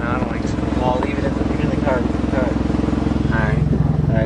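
1992 Toyota Corolla engine running steadily, heard with voices over it; its note changes a little over three seconds in.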